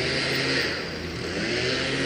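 A motor vehicle going by, a steady rush of engine noise.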